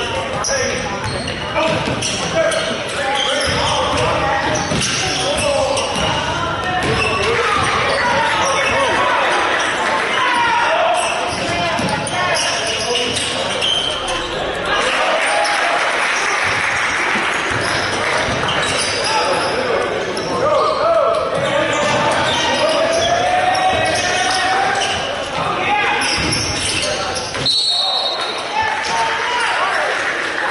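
Basketball game in a gym: the ball dribbling on the hardwood court, with indistinct shouting and chatter from players and spectators echoing in the large hall. A short referee's whistle sounds near the end.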